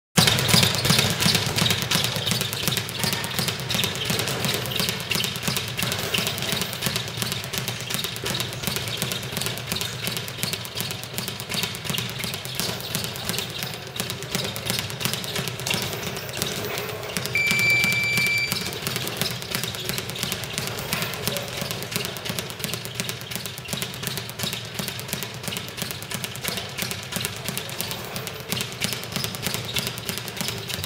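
Speed bag being punched continuously, the leather bag rattling rapidly against its wooden rebound platform in a fast, even drumming rhythm. A single high beep lasting about a second sounds a little past halfway.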